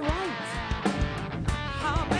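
Rock band playing: electric guitar to the fore over bass guitar and drums.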